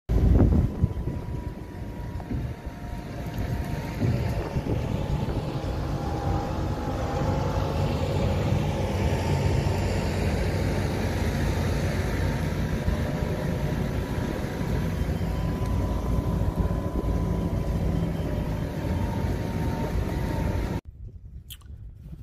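Steady outdoor rumble of wind on the microphone, with a faint steady hum running under it. It cuts off suddenly near the end.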